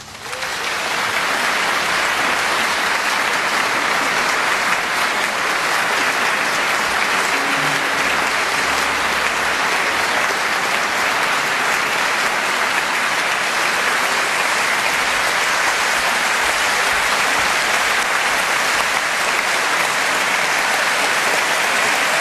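Audience applauding steadily. The clapping breaks out within the first second as the last orchestral chord dies away.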